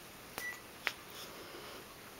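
Two sharp clicks about half a second apart from a metal jacket zipper pull as a cat bites and tugs at it, with a brief high beep-like tone just after the first click.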